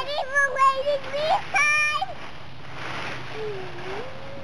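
A young child's high-pitched sing-song vocalising: several short held calls in the first two seconds. Then a soft rustle of dry leaves, and a lower voice sliding down near the end.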